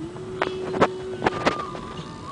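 Toyota Corolla cabin on the move: several sharp knocks and rattles, with a faint steady low tone for about the first second, then a fainter higher tone.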